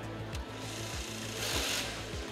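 The robot's belt-driven rollers run briefly, rubbing as they push a foam note through the amp mechanism, with the rub peaking about a second and a half in. Background music with a steady beat plays over it.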